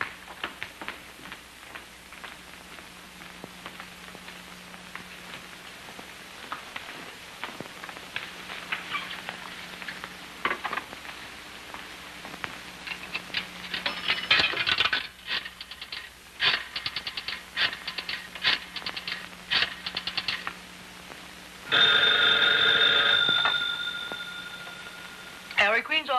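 Rotary pay-phone dial clicking as a number is dialed, in short runs of rapid clicks. A telephone bell then rings loudly about 22 seconds in and fades just before the end.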